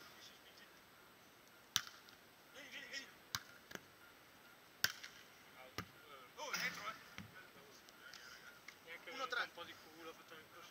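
A volleyball being struck during a beach volleyball rally: four sharp slaps of the ball off players' hands and arms, the first about two seconds in and the others spaced roughly a second to a second and a half apart. Faint distant voices are heard in between.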